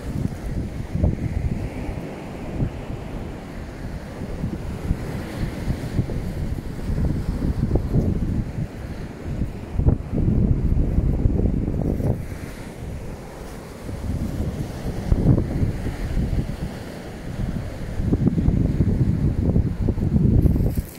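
Wind buffeting the microphone, a low rumble that swells and drops in irregular gusts, over the wash of surf on the shore.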